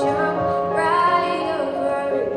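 A girl singing into a handheld microphone, holding long notes that step and glide between pitches.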